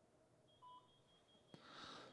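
Near silence, with a brief faint beep about half a second in and a faint high steady tone after it, then a soft click and a faint hiss near the end.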